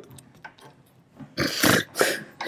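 A quiet moment of studio room tone, then about one and a half seconds in a person makes a short, breathy, wordless sound at the microphones.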